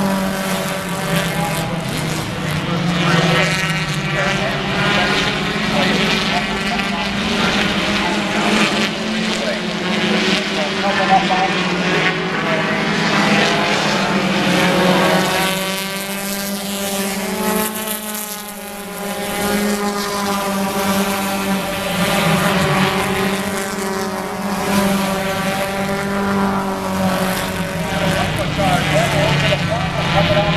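A pack of four-cylinder stock cars racing on a short oval track, several engines revving and sounding together as the cars lap, their pitches rising and falling as they pass. The sound drops briefly a little past halfway and then comes back up.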